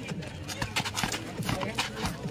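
Boxing gloves landing punches in a quick, uneven series of sharp thumps during a close-range sparring exchange, with onlookers' voices underneath.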